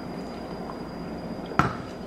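A single sharp knock about one and a half seconds in, an aluminium drink can being set down on a kitchen counter after a sip. Otherwise quiet room tone with a faint steady high-pitched whine.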